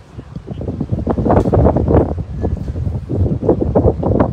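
Wind buffeting a phone's microphone in an irregular, gusting rumble, mixed with handling noise as the phone moves against a padded jacket.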